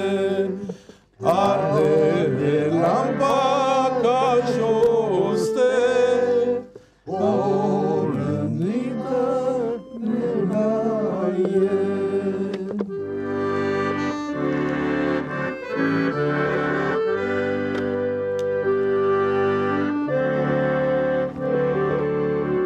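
Weltmeister piano accordion playing a sad song, with a man singing over it for about the first half. Voice and accordion break off briefly twice, about one and seven seconds in. After that the accordion carries on alone with steady chords.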